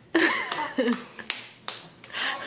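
Three sharp clicks or snaps, unevenly spaced over about a second, alongside a voice starting to speak.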